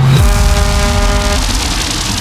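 Loud dense rushing noise, a sound effect within a reggaeton DJ mix that takes the place of the beat, with two held tones that stop about a second and a half in.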